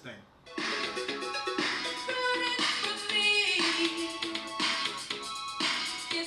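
Music played over Bluetooth through a Bonaok karaoke microphone's built-in speaker, loud but with little bass, starting about half a second in.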